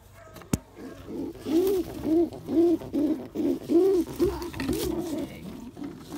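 A pigeon giving a rapid run of short, low cooing calls, each rising and falling in pitch, about two a second and tailing off near the end. It is a weird noise, like a tree frog sound.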